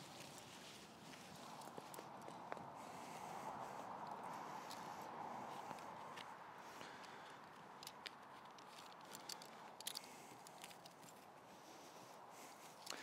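Faint outdoor background hush, with a few soft ticks and knocks near the end as tent pegs and guy lines are handled.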